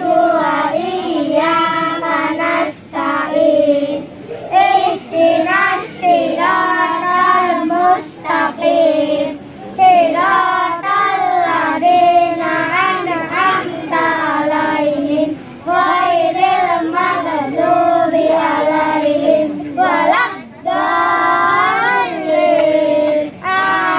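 Children singing together in chorus: a melody of held, wavering notes sung in phrases, with brief breaks between them.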